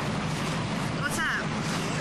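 Steady outdoor background noise with a low, engine-like hum, and a short voice sound about a second in.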